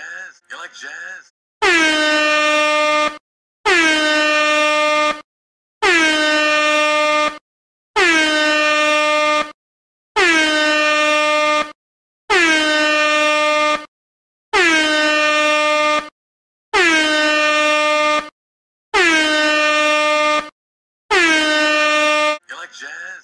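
Meme air horn sound effect blasting ten times in a row, each blast about a second and a half long with a slight drop in pitch at its start, repeating about every two seconds.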